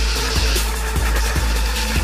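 Electronic trap music with heavy bass and a steady beat.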